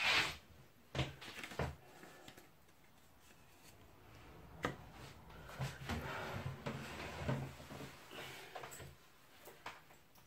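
Tarot cards being handled and a card laid down on a cloth-covered table: a few faint taps and clicks, then a soft rustle of the deck for a few seconds.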